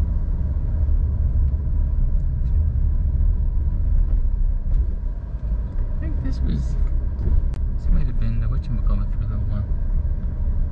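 Steady low rumble of a car's engine and tyres, heard inside the moving cabin. About six seconds in, muffled talking runs over it for a few seconds.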